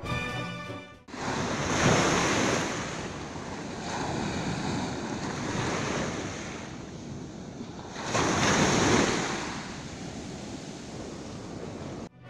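Sea surf washing onto a sandy beach: a steady rush of small waves, swelling louder as waves break about two seconds and again about nine seconds in.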